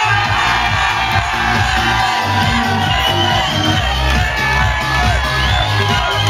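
Loud club dance music with a pulsing bass beat that kicks back in at the start, and a crowd of dancers shouting and cheering along.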